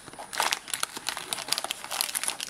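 Packaging being handled and crinkled, a rapid run of crackles and crinkles starting about a third of a second in.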